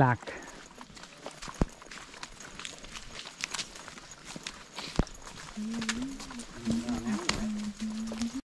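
Footsteps on a dry dirt and leaf-litter forest trail, with scattered light ticks and two sharp snaps, about a second and a half and five seconds in. In the last couple of seconds a voice hums a low, steady note.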